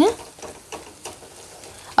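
Spatula stirring a thick, cooked-down tomato masala in a stainless steel kadai, with soft scrapes against the pan and a faint sizzle.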